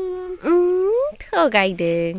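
A child humming a wordless tune: a held note, then a note that slides up, then a lower note held near the end.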